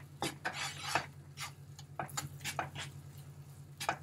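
Wooden spoon stirring and scraping flour toasting in butter in a frying pan, with irregular clicks and scrapes of the spoon against the pan.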